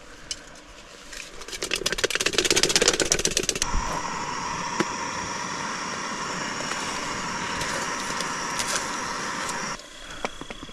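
Small canister gas stove burner running under a cook pot with a steady hiss and a thin whine, after about two seconds of fast crackling. The sound stops abruptly near the end.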